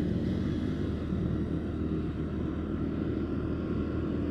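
A motorcycle's engine running at a steady cruising speed, with road and wind noise, an even drone with no change in pitch.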